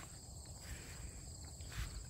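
Faint outdoor ambience: crickets chirring steadily, high-pitched, over a low rumble.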